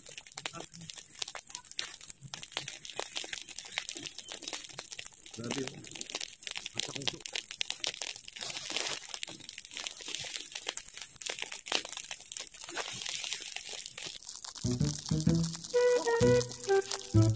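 A burning heap of cut dry grass and weeds crackling and popping with dense, irregular snaps. Music with a beat comes in about a second before the end and is the loudest thing heard.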